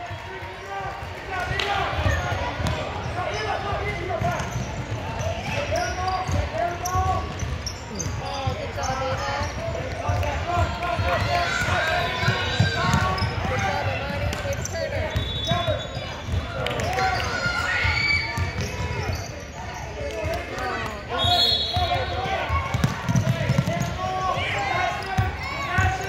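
Basketball game in a big echoing gym: the ball bouncing on a hardwood court and players running, with voices of players and spectators calling out throughout. There are a few short, high squeaks.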